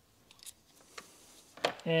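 A few faint, short clicks from hand work on the engine's ignition coil packs and their bolts, then a man starts speaking near the end.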